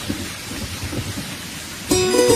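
A steady, noisy background like rain, with low rumbles underneath. Near the end, music with plucked strings starts abruptly.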